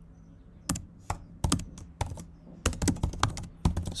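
Typing on a computer keyboard: a short pause, then quick runs of keystroke clicks in uneven bursts.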